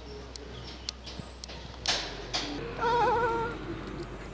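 A short, wavering bleat from an animal, about three seconds in, over faint background noise.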